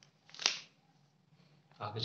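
A brief papery rustle, about half a second in, of a hand brushing across a notebook page.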